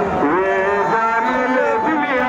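A voice chanting a noha, a Shia lament, over horn loudspeakers, gliding into one long held note.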